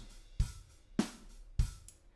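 Sampled acoustic drum kit in Steinberg Groove Agent 5's Acoustic Agent playing: three strong drum hits about half a second apart, with lighter hits near the end.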